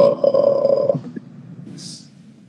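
A man's drawn-out wordless vocal sound, held at a steady pitch for about a second, then a short breathy hiss near the end.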